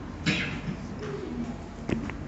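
A dove cooing softly in the background, with a rubbing rustle and a sharp click from the boom-arm microphone being adjusted by hand.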